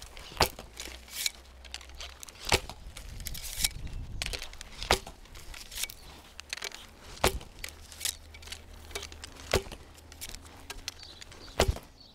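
Assyrian bow shot in quick succession: a sharp snap of the string on release about every two and a half seconds, six in all, with fainter knocks and rustling between the shots.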